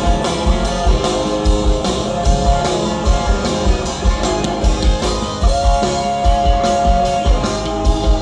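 A live rock band playing: an electric guitar line over a drum kit with a steady kick drum, with a long held guitar note in the second half.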